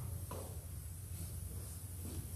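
Quiet room tone in a large church: a steady low hum with a faint click about a third of a second in.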